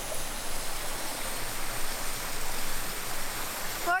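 Small creek and waterfall running, a steady, even rush of water.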